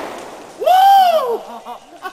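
The roar of an aerosol hairspray can exploding into a fireball in a campfire, fading away at the start. About half a second in, a person gives a loud yell that rises and then falls in pitch for nearly a second, and a few short voice sounds follow.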